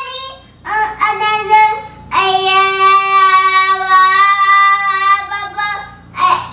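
A child's voice: two short high calls, then one long high note held for about four seconds, a drawn-out protest wail or sung note.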